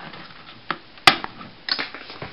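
A few sharp clicks of hard plastic from a Transformers Voyager Ratchet toy being handled. The loudest snap comes about a second in, as the removable off-road light section pops off.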